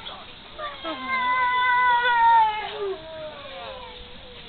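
A dog whining in high-pitched cries, one held for nearly two seconds and sliding slightly down in pitch, with shorter whines around it.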